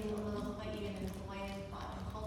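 Speech: a person talking, not picked up clearly enough to be transcribed.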